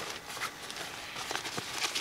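Faint rustling of a fabric storage bag being opened and rummaged through, with a few soft clicks and knocks.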